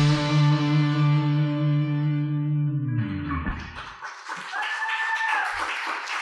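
The band's closing chord on distorted electric guitar and bass rings out and slowly fades, then is cut off about three seconds in. After it comes a softer, hissy patter with a brief high held tone.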